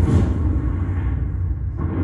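A film trailer's soundtrack opening with a deep, steady rumble, loud and low.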